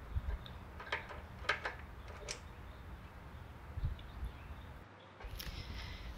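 Faint handling noise: a few light clicks from the metal end of a motorcycle speedometer cable turned in the fingers, over a low hum.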